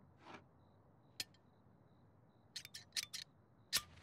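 Scissors snipping through hair: a few scattered snips, then a quick run of about five snips past the middle, and one more near the end.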